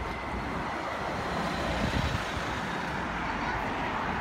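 Street traffic noise with a double-decker bus's engine running: a steady rumble and hiss with a faint thin high whine.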